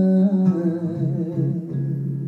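Live male vocal holding a long sung note with vibrato over guitar accompaniment; the voice fades out about one and a half seconds in while the guitar plays on.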